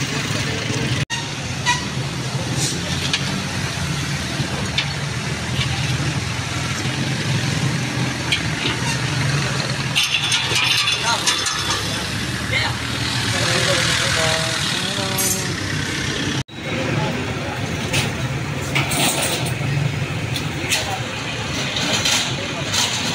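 A vehicle engine idling steadily under people's voices, with scattered knocks and clatter of wooden stall frames being handled. The sound breaks off abruptly twice, about a second in and about three-quarters of the way through.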